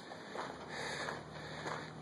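Faint steady background noise with a low, steady hum.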